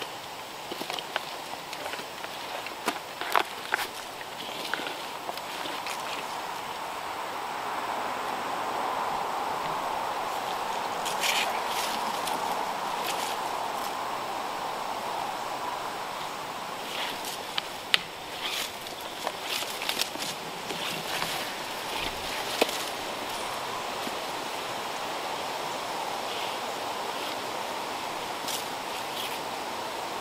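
Scattered clicks, knocks and rustles of tree-climbing gear being handled on the trunk: carabiners, rope and a climbing stick against the bark, with boots shifting on the stick. A steady outdoor hiss runs underneath, and the clicks come thickest a third of the way in and again past the middle.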